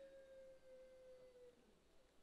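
Near silence, with one faint sustained tone that sags slightly in pitch and dies away about one and a half seconds in.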